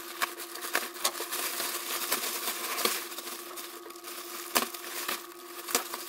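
Black plastic parcel wrap being slit with a knife and pulled back from the bubble wrap beneath: crinkling and rustling of plastic with sharp clicks and snaps, the loudest near the end, over a steady low hum.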